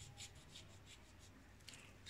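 Near silence: faint scraping and light ticks of a kitchen knife cutting into a whole lemon's peel, scoring it crosswise, over a steady low hum.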